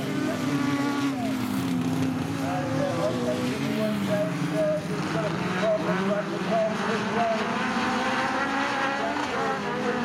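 Several autograss specials' engines racing together on a dirt track, their pitch rising and falling over one another as they accelerate and lift off through the corners.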